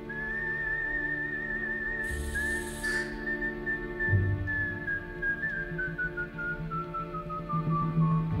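Intro music: a single high, wavering melody tone that holds and then slowly glides down in pitch over sustained low notes, with a short hiss about two seconds in.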